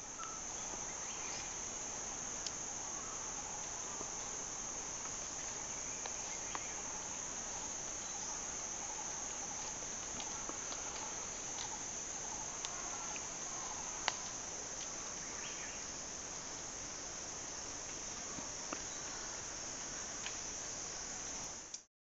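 Steady, shrill drone of an insect chorus running without a break, with a few faint clicks, the sharpest about fourteen seconds in.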